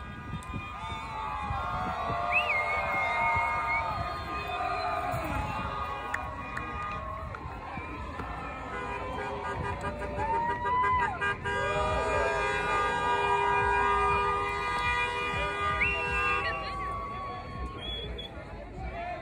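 Crowd shouting and cheering, then car horns sounding in long, held, overlapping blasts through most of the second half.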